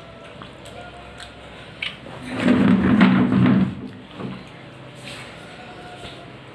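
Faint eating sounds with a few small clicks, then about two seconds in a loud, pitched vocal sound from a person that lasts about a second and a half.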